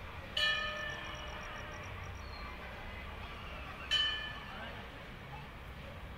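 Temple bell struck twice, about three and a half seconds apart, each strike ringing on and slowly fading.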